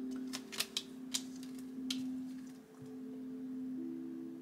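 Soft background music of sustained held notes, with a few light clicks and taps in the first two seconds as tarot cards are handled.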